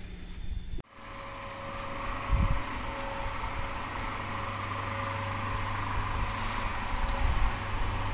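Electric traction hoist motors of a suspended work platform running, a steady mechanical hum that starts suddenly about a second in and grows gradually louder, with one dull thump about two and a half seconds in.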